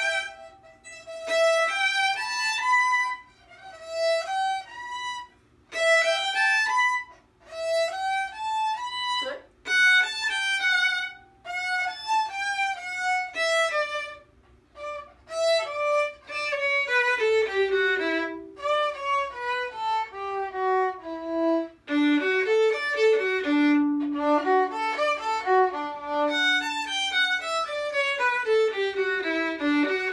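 Two violins playing a tune together. For the first half they play short phrases with brief pauses between them; after that come longer runs of notes stepping downward, and from about two-thirds of the way in the playing runs on almost without a break.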